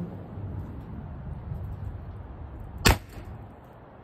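One sharp shot, about three seconds in, from a .68-calibre CO2-powered less-lethal pistol fired through a chronograph. The CO2 cartridge is running down, and the shot registers at about 390 feet per second.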